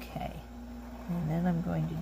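A woman's voice: a brief sound at the start, then a drawn-out phrase in the second half, over a steady low hum.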